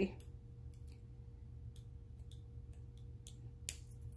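Scattered faint metal clicks of a silver-tone hinged bangle bracelet being fitted on a wrist and its box clasp snapping shut, with a sharper click near the end.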